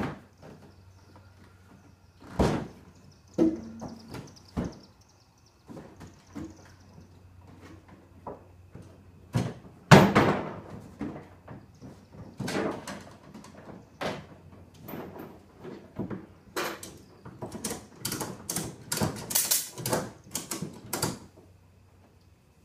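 Scattered knocks and thumps of a plastic Pelican Bass Raider 10E boat hull being shifted and strapped down in a pickup truck bed, the loudest thump about ten seconds in, and a quick run of knocks and clicks near the end.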